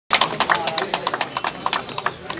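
A small group of people clapping: irregular hand claps, several a second, that thin out toward the end, with voices underneath.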